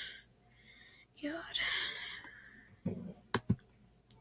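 A short breathy whisper from a person, about a second long, then a soft knock and two sharp clicks near the end as a hand works the computer.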